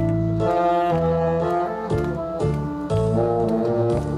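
Tenor saxophone playing a melody over a backing track with a steady bass line, the sax moving through several held notes.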